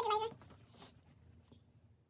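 A short, high-pitched vocal sound falling slightly in pitch, over within the first half second, then faint room tone.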